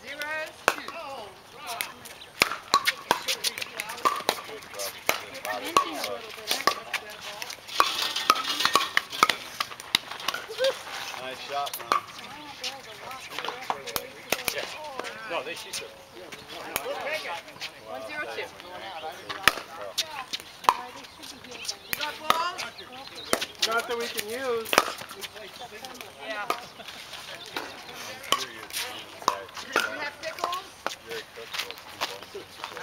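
Pickleball paddles hitting a plastic pickleball, many sharp pocks at irregular spacing through play, with voices talking in the background.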